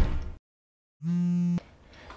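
The end of a loud door-slam thud dies away. After a moment of dead silence, a mobile phone gives one short steady electronic buzz, lasting about half a second, for an incoming call.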